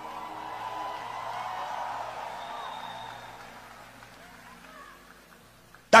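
A congregation's many voices swell and then fade away, over soft background music of held chords.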